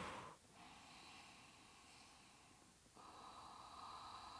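Near silence: quiet room tone with faint breathing from a person holding a stretch, the tail of an exhale at the very start.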